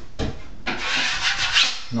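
Drywall knife scraping dried joint compound off a taped drywall joint, knocking off lumps and ridges left by the first coat before the second coat. It is a brief stroke followed by a longer run of quick, repeated scraping strokes.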